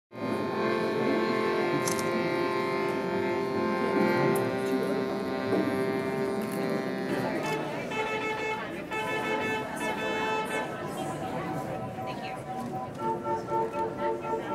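Music on a small wooden keyboard instrument: a held, buzzing chord with many overtones for about seven seconds, then shorter repeated notes, turning into a regular pulsing figure near the end.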